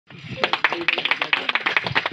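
A small group clapping by hand, quick irregular claps running together.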